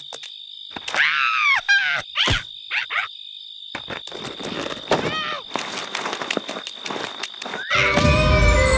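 A cartoon dung beetle's short grunting vocal noises as it pushes a dung ball: several bursts a second or so apart that bend in pitch, over a steady high insect chirr. Music comes in just before the end.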